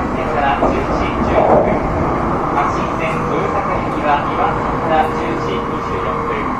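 Joetsu Shinkansen cabin noise: the steady rumble of the train running at speed on elevated track, heard from inside the passenger car, with faint voices in the car. A faint steady tone joins about four seconds in.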